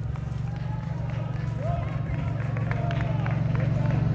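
John Deere Gator utility vehicle engine running steadily as it drives up, growing gradually louder as it nears. Faint distant voices can be heard under it.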